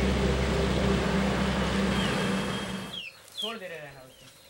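A concrete mixer truck's diesel engine rumbling with a low hum as the truck drives off down the road, fading over about three seconds. Then the sound cuts off suddenly, and a brief call from a person's voice follows near the end.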